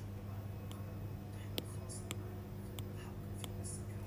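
A few faint taps of a stylus on a tablet's glass screen, the strongest about a second and a half in, over a steady low hum.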